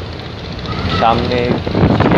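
Steady low rumble of a river launch under way, mixed with wind noise on the open deck, with a man's voice talking from about a second in.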